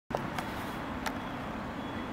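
Steady low rumble of distant road traffic, with three short, sharp clicks in the first second or so.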